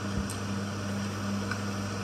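Steady low electrical-type hum with a faint hiss, and a soft low knock shortly after the start.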